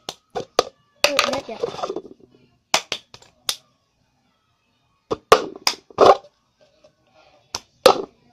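Cup-game rhythm: hand claps and a plastic cup being tapped and knocked down on a hard surface, sharp claps and knocks in short bunches, with a pause of about a second and a half in the middle.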